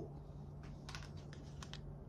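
Faint, quick clicks and taps of tarot cards being handled and drawn from the deck, several in a row over a faint steady hum.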